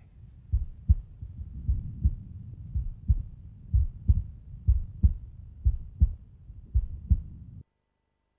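A heartbeat: low thuds in lub-dub pairs, about one beat a second, that cut off suddenly near the end.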